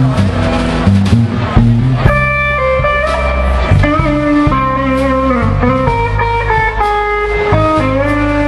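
Live band playing an instrumental passage: a lead line of long held, slightly sliding notes over bass and drums.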